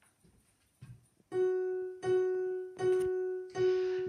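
A piano or keyboard sounds the same note four times, evenly spaced, each note fading before the next. The notes begin after about a second of near silence.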